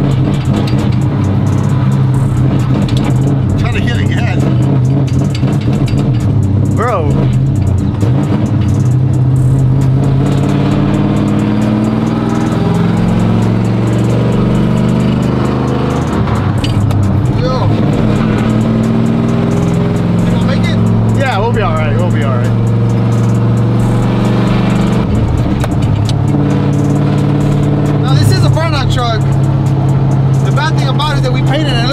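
Chevy cateye pickup's engine running as the truck is driven, heard from inside the cab: a steady low drone whose pitch steps as the revs change. It is running not quite right, which the crew puts down to E85 in a tank tuned for 93 octane.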